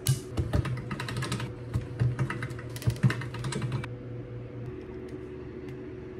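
Rapid light clicking and tapping from polymer clay and crafting tools being handled and re-rolled on a marble slab, stopping about four seconds in.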